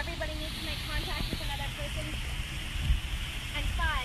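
Steady wash of surf with wind rumbling on the microphone, and people's voices talking faintly now and then.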